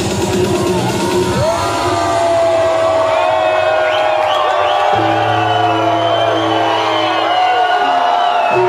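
Live trance music played loud through a club sound system, with a woman singing into a microphone. The pounding kick beat drops out about one and a half seconds in, leaving held synth chords and a deep bass note that comes in around five seconds. The crowd whoops and cheers throughout.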